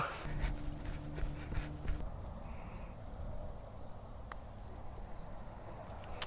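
Steady high-pitched chirring of insects on a golf course, with one faint sharp click about four seconds in as a putter strikes the golf ball.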